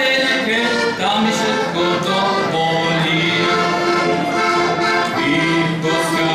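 Heligonka, a Slovak diatonic button accordion, playing a folk tune: a melody with chords over steady held bass notes.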